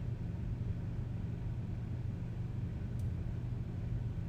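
A steady low hum with no speech, and a single faint click about three seconds in.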